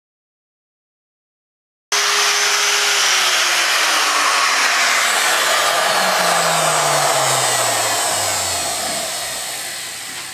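After about two seconds of dead silence, an electric router cuts in abruptly at full speed. About a second later it is switched off, and its whine falls steadily in pitch and fades as the motor and dovetail bit spin down over the next several seconds.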